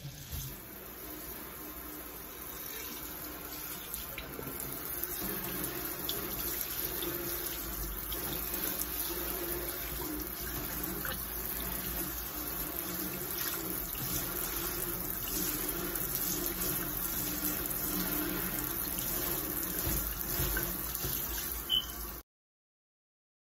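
Water from a kitchen sink's pull-out sprayer running steadily into a stainless steel basin, with a brief knock near the end.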